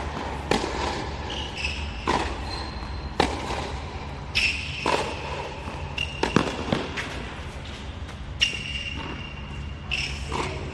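Tennis rally on a hard court: ball struck by rackets and bouncing, sharp hits coming about once a second, with short high squeaks of sneakers on the court between them.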